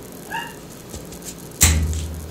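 A brief high whine about half a second in, then a sudden loud thump with a low rumble near the end, the handling noise of the camera and toys being moved by hand.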